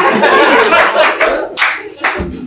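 A small audience clapping, fading out near the end.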